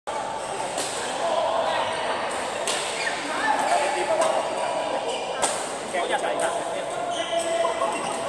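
A badminton rally in a large hall: rackets strike the shuttlecock with sharp pops several seconds apart, with sneakers squeaking on the court floor and voices in the background.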